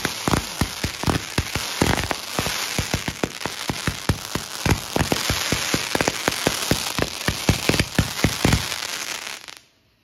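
Samurai 500-gram multi-shot firework cake firing its finale: a rapid, dense string of launch bangs, about five a second, over a continuous crackle from the glittering stars. It stops briefly near the end before the next volley starts.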